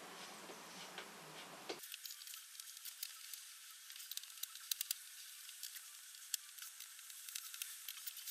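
Faint, irregular clicks and scratches of a hand screwdriver working screws into flat-pack chipboard drawer panels, with a few sharper clicks in the middle.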